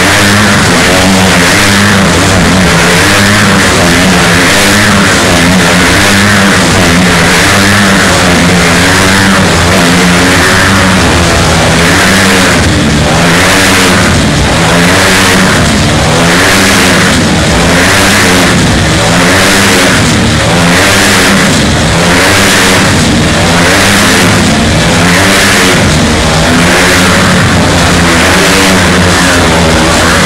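Motorcycle engines racing round inside a steel-mesh globe of speed, very loud. The pitch keeps rising and falling as the bikes loop, and from about halfway on the loops come in an even rhythm of about one every second and a half.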